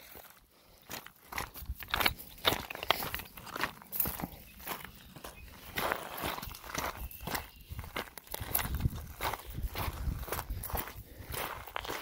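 Footsteps crunching over loose rocks and gravel on a stony shoreline, with stones clattering underfoot at an irregular walking pace.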